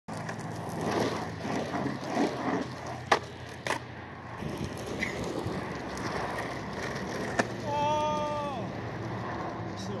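Skateboard wheels rolling on asphalt, with three sharp clacks of the board against the pavement, two close together about three seconds in and one about seven seconds in. Soon after the last clack comes a brief held tone that dips at its end.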